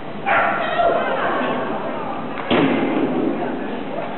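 A person's loud calls, as an agility handler gives commands to the dog running the course, with a sharp knock about two and a half seconds in.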